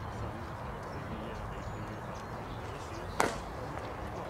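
A single sharp pop about three seconds in: a pitched baseball smacking into the catcher's leather mitt, over steady outdoor ballpark background noise.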